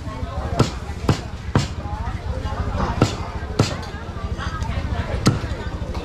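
Meat cleaver chopping pork on a round wooden chopping block: six sharp chops at uneven intervals, three in quick succession near the start.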